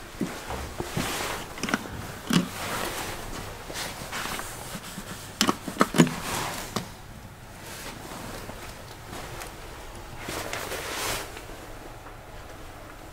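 Footsteps and rustling with scattered knocks, and a quick run of four sharp clicks about halfway through as the elevator's landing call button is pressed.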